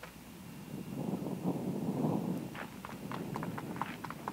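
A golf cart driving along a paved cart path: a low rumble that swells and fades over about two seconds, with a few light clicks in the second half.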